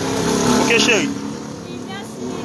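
A motor vehicle engine running steadily, with a voice saying "oui, merci" over it just under a second in.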